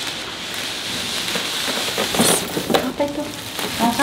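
Bubble wrap and plastic wrapping crinkling and rustling as a wrapped cardboard package is unwrapped and its outer carton is pulled off.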